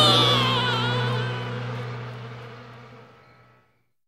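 The last held sung note of a song, with its backing chord, fading away over about three and a half seconds into silence.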